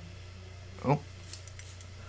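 Hand-pumped glass plant mister spraying a few short puffs of mist onto air plants, each a brief faint hiss, over a steady low electrical hum.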